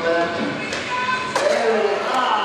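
Skateboard hitting hard on a skatepark course: a sharp knock at the start and another about a second and a half in, with voices shouting and a falling shout right after the second knock.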